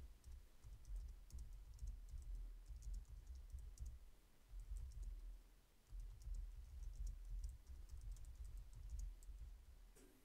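Faint, irregular clicks of a computer keyboard and mouse being worked, over a low rumble on the microphone that comes and goes.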